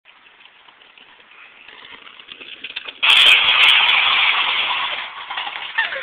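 Scooter wheels rolling over pavement, growing louder as they approach, then about three seconds in a sudden loud crash as the rider ploughs into a heap of drink cans, the cans clattering and scattering and fading over about two seconds.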